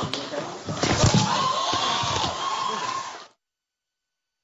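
A heavy thud, most likely a person's body falling onto a studio stage, about a second in, with voices crying out in alarm around it. The sound then cuts off abruptly to dead silence after about three seconds.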